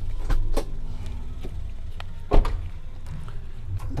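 Toyota Agya's doors being worked by hand: a few light clicks and one solid thump a little over two seconds in, over a steady low rumble.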